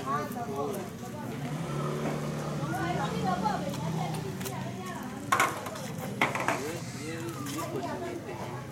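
Chatter of several people talking at once, not close to the microphone, with a couple of short sharp knocks about five and six seconds in.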